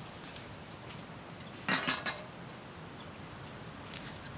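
Metal camp cookware clattering: a brief run of clinks and rattles about halfway through, handled off-screen.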